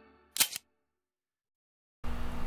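A short, sharp double click, two clicks about a tenth of a second apart, about half a second in.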